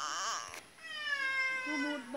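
A baby's high-pitched vocal cries: a short wavering cry at the start, then one long cry that slides slowly down in pitch from about a second in.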